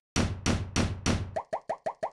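Title-card sound effects: a series of quick falling whooshes with a deep low end for about a second and a quarter, then a rapid string of short, pitched pops near the end.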